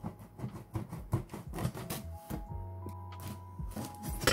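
A large knife blade slicing along the packing tape of a cardboard box, a run of short crackling scrapes. Background music with held notes and a bass line comes in about halfway.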